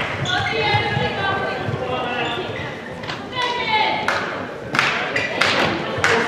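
A handball bouncing and thudding on a sports-hall floor several times in the second half, among players' and spectators' voices in the large hall.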